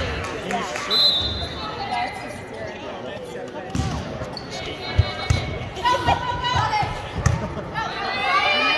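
Volleyball being struck during a rally in a gymnasium: a series of sharp hits, starting about four seconds in, echoing in the hall, with players calling out between them.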